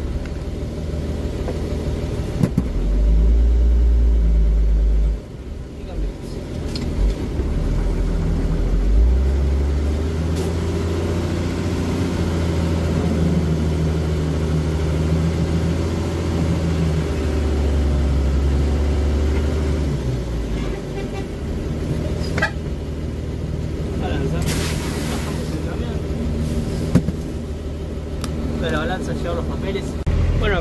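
Diesel engine of a vintage Mercedes-Benz truck heard from inside the cab, pulling the truck slowly onto a weighbridge. It runs louder and deeper a few seconds in and again through most of the middle, then eases back to a lower running note. A short hiss comes near the end.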